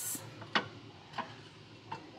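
Three light clicks, spaced a little over half a second apart, as a glazed ceramic fish vase is handled and lifted off a glass display shelf.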